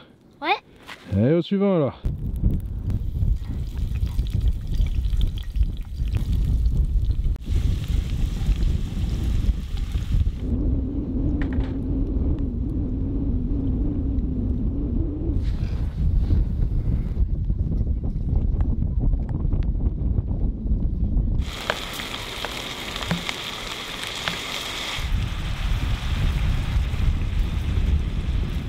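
Wind buffeting the microphone for most of the stretch, a dense low rumble, broken near the end by a few seconds of brighter hissing noise.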